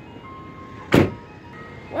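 A single short, loud thump about halfway through, over faint background music with a few held notes.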